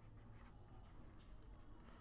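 Faint scratching of a stylus writing strokes on a tablet, barely above near-silent room tone.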